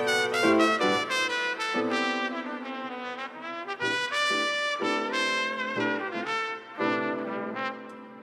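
Instrumental smooth jazz: a lead melody of connected pitched notes over sustained chords and bass.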